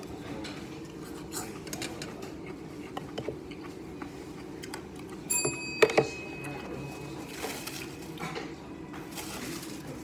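Tableware clinking while eating: small scattered clicks, then one clear ringing clink of a dish about five seconds in that rings on for over a second, followed at once by a sharp knock on the table.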